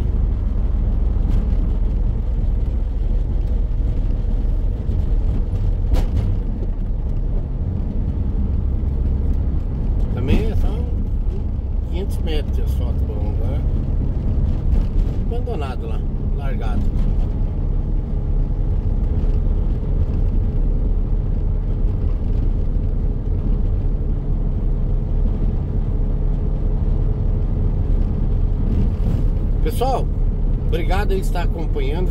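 Steady low drone of a Mercedes-Benz Sprinter van's engine and tyres heard from inside the cab while driving on a concrete road, with a few short snatches of voice around the middle.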